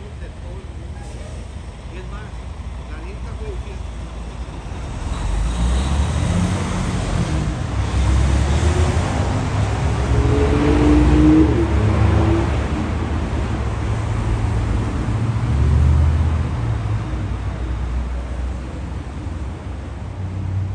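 City street traffic: motor vehicles passing, the low rumble building from about a quarter of the way in and loudest twice, around the middle and again a little later, before easing off.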